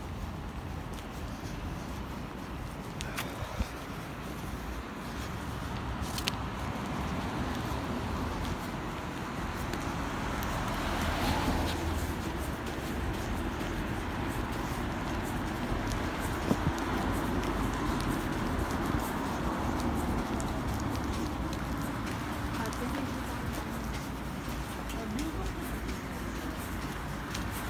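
Street ambience heard while walking: steady road-traffic noise, with a vehicle passing louder around ten to twelve seconds in, and a few short knocks.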